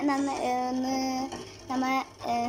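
A girl's voice holding one long, steady note for over a second, then a shorter note near the end.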